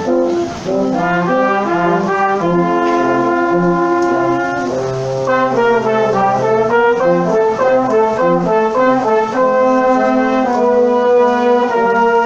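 Brass quintet of two trumpets, French horn, trombone and low brass playing a chordal arrangement together, with a brief break about half a second in before the ensemble carries on.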